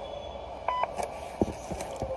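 A single short electronic beep just under a second in, followed by a couple of light knocks.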